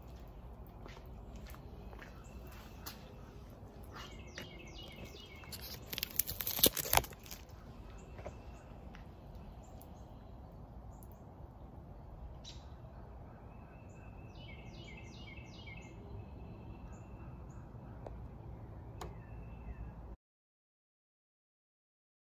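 A songbird singing outside, repeated runs of short high chirps, over steady low background noise. About six seconds in there is a brief loud noise, the loudest sound here, and the sound cuts off suddenly about twenty seconds in.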